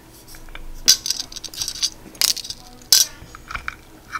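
Foil-wrapped chocolate coins being set down on a ceramic plate, making three sharp clicks about a second apart, with foil wrapper crinkling between the first two.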